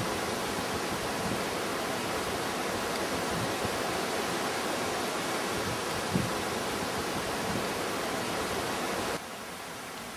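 Steady rush of a mountain stream, with two brief low bumps, one at the start and one about six seconds in. About nine seconds in the sound drops suddenly to a quieter hiss.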